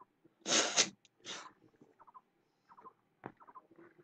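A man's two loud, breathy exhalations, the first about half a second in and the second about a second later, followed by faint small sounds.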